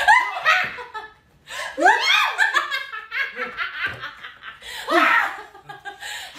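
A young woman laughing hard in repeated high-pitched bursts, with a brief pause about a second in.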